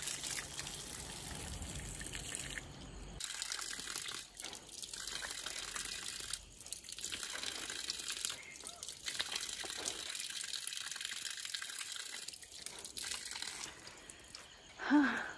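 Cold water poured and splashing over a person in a bucket-style bath, in a run of pours with short breaks between them.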